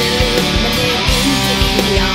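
Rock band music: guitars over a steady drum beat, with a lead melody line bending in pitch.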